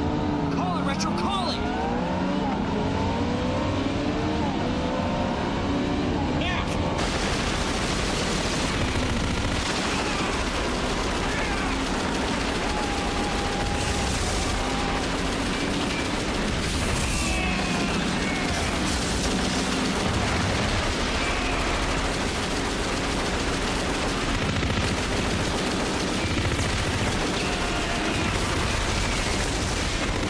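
Soundtrack of a staged TV gun battle. Rising and falling sweeps in the first few seconds give way, about seven seconds in, to continuous dense gunfire and blasts, with shouts mixed in.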